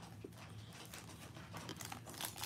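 Faint crinkling of a foil trading-card pack as it is picked up and handled, growing a little louder near the end.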